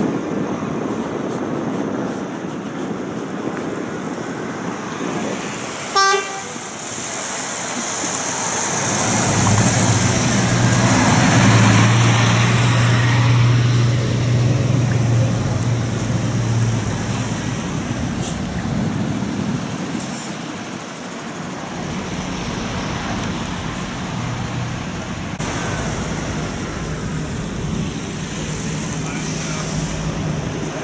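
A brief vehicle horn toot about six seconds in, then a motor vehicle's engine running with a steady low note for several seconds around the middle, louder as it nears and fading after.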